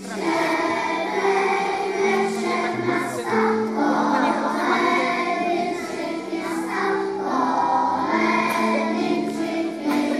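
A group of young kindergarten children singing a song together as a choir, a steady run of held sung notes.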